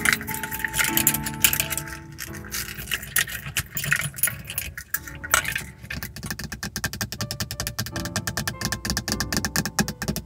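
Long fingernails handling a chain pendant and an air-freshener bottle hanging from a car's rearview mirror, making them jingle and click. From about six seconds in, quick, even fingernail taps on the plastic rearview mirror housing. Soft music with held tones underneath.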